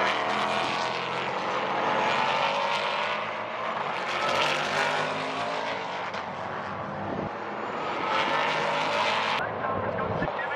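A pack of S5000 open-wheel race cars with Ford Coyote V8 engines racing past. Several engine notes overlap, their pitch rising and falling as the cars go by.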